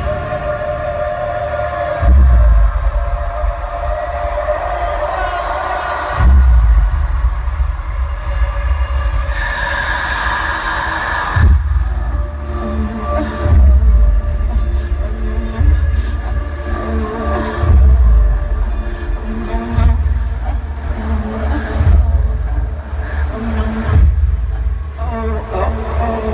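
Live pop concert music through an arena sound system, recorded on a phone in the crowd: a voice over heavy bass hits every few seconds.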